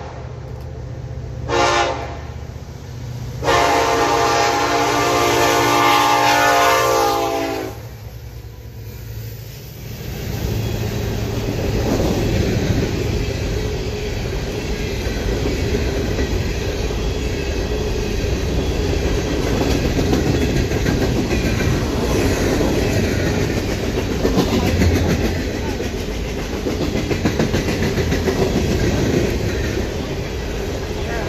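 Norfolk Southern SD70ACe locomotive horn: a short blast, then a long one of about four seconds. After that comes the steady rumble and wheel clatter of a freight train's open hopper cars rolling past close by.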